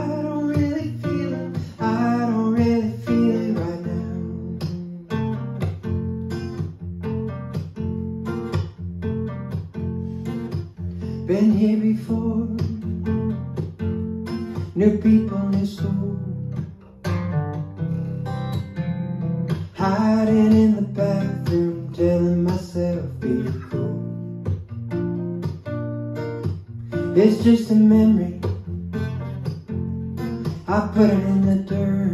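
Solo acoustic guitar picked and strummed in an alternate tuning, with a man singing in places.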